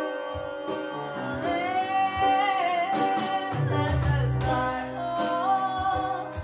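A woman singing a song with held, wavering notes, accompanied by a home band with guitar and drums; deeper bass notes come in about halfway through.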